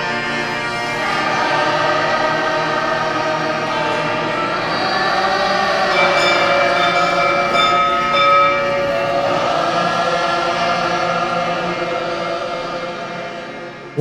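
A group of voices singing together in a slow chant, with long held notes, fading out near the end.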